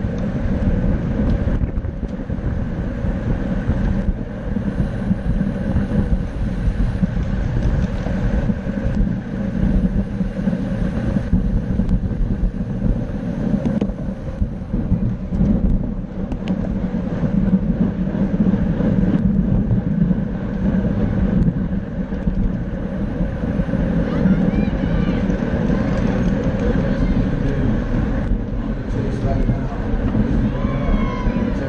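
Wind rushing over the microphone of a bicycle-mounted camera moving at race speed in a pack of riders: a steady low rumble that rises and falls slightly.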